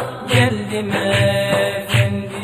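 Instrumental passage of a Turkish ilahi (devotional hymn): a drum beats about every 0.8 s under a held melodic note, with no singing.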